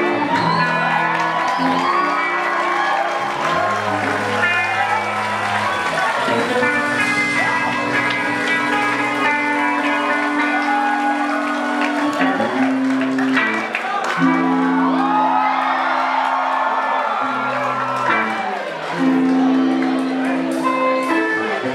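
Live band playing: electric guitar, bass guitar and drums, with long held bass notes that change every second or two. A crowd cheers and whoops over the music.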